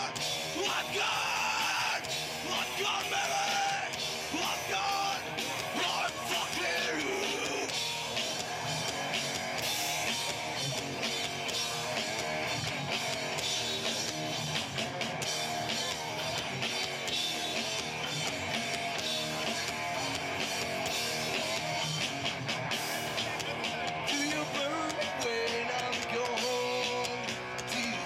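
Live rock band playing amplified electric guitars and drums, with vocals.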